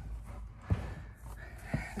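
A person getting up from sitting: light rustling of clothing and a bag, with two soft knocks, one under a second in and one near the end.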